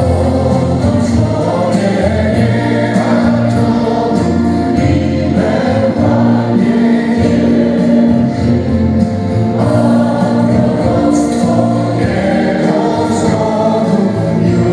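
A choir singing a slow Christmas carol with accompaniment, in long held chords over a steady bass line.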